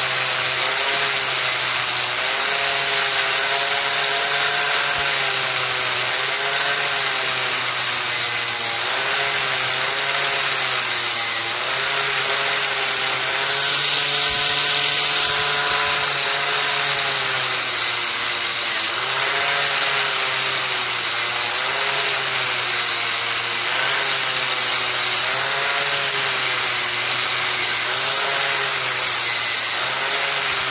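Angle grinder with a wire wheel brushing red-hot forged steel, running continuously: a steady scratchy hiss of the wire bristles on the metal over the motor whine, which wavers up and down in pitch as it works.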